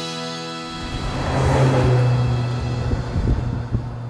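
Maserati Levante Trofeo's Ferrari-built V8 driving past: a rush of engine and road noise swells to its loudest about a second and a half in, then settles into a steady low engine note as the SUV pulls away.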